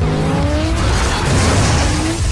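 Film car-chase sound: car engines revving hard, their pitch climbing twice, over a loud, dense rumble of tyre and road noise.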